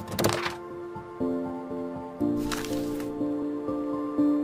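Logo intro jingle: a whoosh at the start and another about two and a half seconds in, over sustained musical notes that enter in steps about one and two seconds in.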